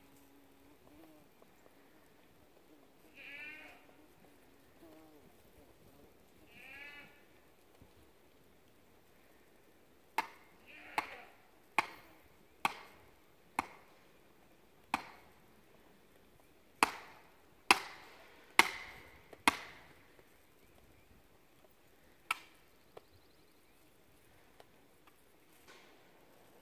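Sledgehammer driving a stake into the ground: about eleven sharp strikes at uneven intervals of roughly a second, in the second half. Earlier an animal bleats twice.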